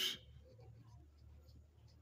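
Faint scratching of a pencil tip on paper as a figure is written by hand, over a low steady hum.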